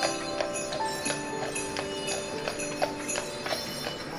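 Jingle bells on a Clydesdale's harness jingling as it walks, with hooves clopping on pavement, over music with a slow melody.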